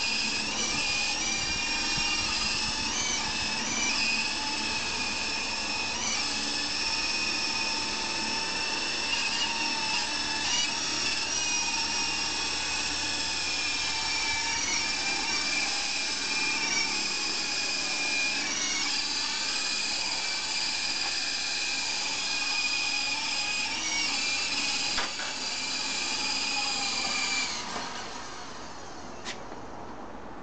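Electric motors and rotors of a Double Horse 9053 Volitation coaxial RC helicopter in flight: a steady high whine whose pitch dips and recovers again and again as the throttle is worked. The whine cuts off a couple of seconds before the end as the helicopter is set down.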